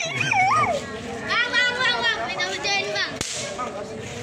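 Children shrieking and calling out excitedly in high voices, with a single sharp crack a little after three seconds in.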